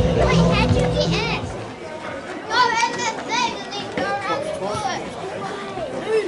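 Children's high-pitched voices calling and shouting on the sideline of a rugby match, several short rising-and-falling cries. Background music with a heavy bass plays for the first second or so and then stops.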